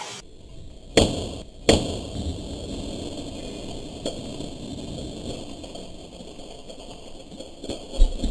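A brake-disc axe blade chopping through a water-filled plastic bottle: two sharp, loud impacts about a second in, less than a second apart, and a smaller one a few seconds later, over a steady noisy rush.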